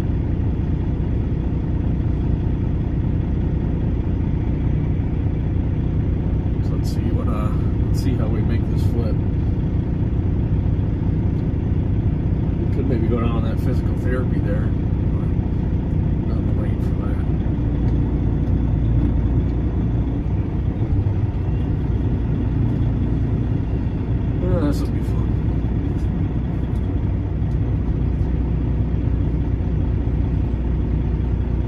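Semi truck's diesel engine idling steadily, heard from inside the cab as a continuous low rumble.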